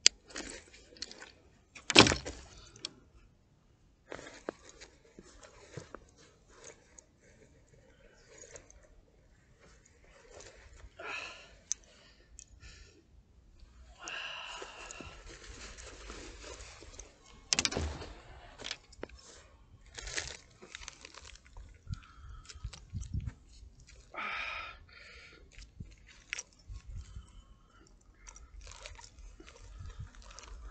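Coat fabric rustling and handling noise on the microphone, with scattered irregular clicks and knocks; the sharpest knock comes about two seconds in.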